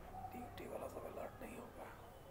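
Faint, low-level speech: quiet voices talking in the background, with no other distinct sound.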